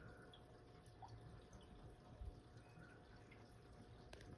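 Near silence with faint aquarium water sounds: a few small drips and bubbles over a low hiss.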